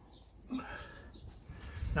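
Small birds chirping in the background, a few short high chirps scattered through, with a soft knock about half a second in.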